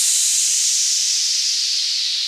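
A steady hiss of noise, like a white-noise sweep effect in a song's electronic arrangement, its brightness slowly falling as the track's notes fall away.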